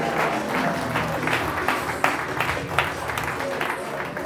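Audience applauding, with many sharp individual claps standing out.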